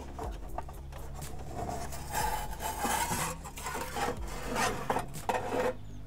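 Steel fuel tray of an Ooni Karu pizza oven scraping and rubbing against the oven's metal as it is worked out past a lip, with faint squeaks of metal on metal partway through.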